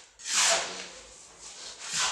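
Two short scraping sounds about a second and a half apart, the first about half a second in and the second near the end.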